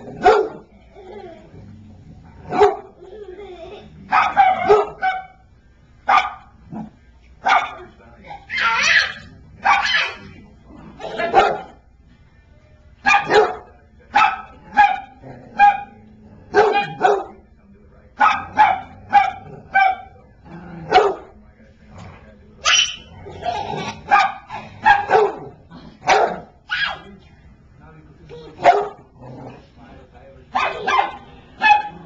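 Dog barking in play, many short sharp barks often coming in quick runs of two to four.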